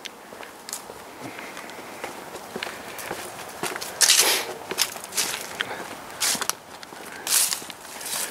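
Footsteps of a person walking over grass, stepping stones and gravel, irregular and uneven, with two louder scuffing steps about four and seven seconds in.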